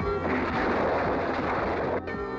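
Trailer score music, overlaid about a quarter second in by a loud, sustained blast of noise that drowns the music. The blast stops suddenly at a cut, and the music continues.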